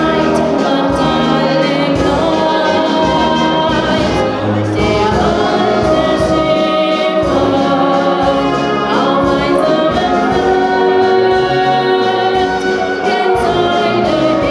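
Live brass band with a woman singing through a microphone: her voice over clarinet, tubas and drums, the tubas carrying the bass line.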